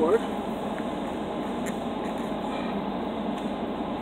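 Car air-conditioning blower running, a steady, even rush of air at constant level.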